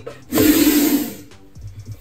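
Albino monocled cobra giving one forceful hiss lasting about a second, a defensive warning as it rears and spreads its hood.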